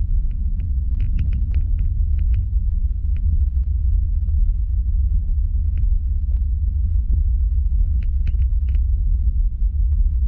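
Cabin noise of a Boeing 737 airliner rolling on the runway after landing: a loud, steady low rumble of the engines and wheels. Groups of light clicks or rattles come about a second in and again near the end.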